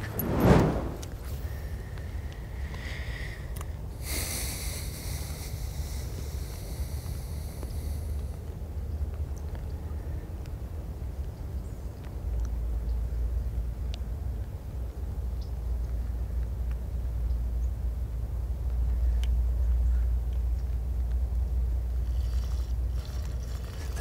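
Wind rumbling on the camera's microphone, low and steady, getting stronger about halfway through, with a short hissing stretch early on.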